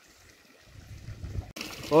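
Water from a pump outlet splashing steadily into a small fish tank. The splashing is faint at first under a low rumble on the microphone, then becomes clearer and louder about a second and a half in. A man's voice starts at the very end.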